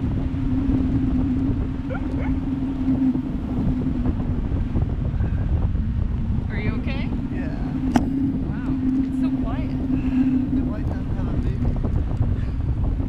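Wind rushing over the microphone high up on a parasail in flight, with a steady low drone throughout. A few brief, high-pitched voice sounds come from the riders between about six and nine seconds in, and there is one sharp click near eight seconds.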